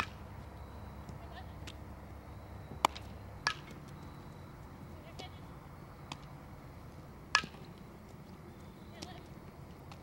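Softball fielding drill: a few sharp knocks of a softball being hit and caught in leather gloves, the loudest about 3 and 7 seconds in, over low outdoor background noise.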